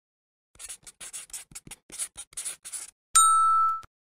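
Pen-scratching-on-paper sound effect: a quick run of short writing strokes, then a single bright chime ding that rings for under a second, the loudest sound here.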